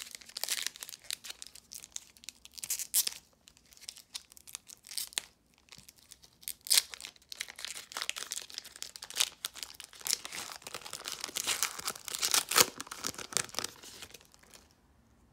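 Foil trading-card pack wrapper crinkling and tearing as it is torn open by hand. The crackling comes in irregular bursts, and the loudest tear is near the end.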